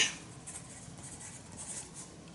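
Pencil writing on paper: faint, short scratching strokes as a word is written.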